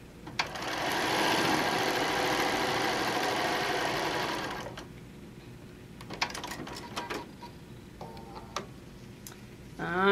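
Electric sewing machine stitching a seam steadily for about four seconds, starting just after a click and stopping abruptly. After it, a few light scattered clicks and taps as the sewn piece is handled.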